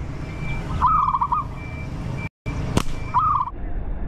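A short warbling bird call, the same phrase repeated twice about two seconds apart, the kind of lure call used to draw birds to the hunter. A sharp snap comes a little under three seconds in: a rubber-band slingshot being shot.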